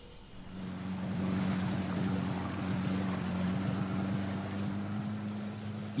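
Small tiller-steered outboard motor on a skiff running steadily at speed, with water rushing past the hull and wind. It rises over the first second, then holds an even pitch.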